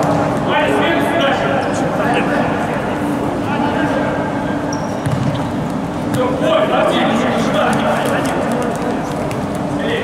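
Indistinct men's voices calling and shouting in a large echoing sports hall during futsal play, loudest about a second in and again past the middle, with a few short sharp knocks.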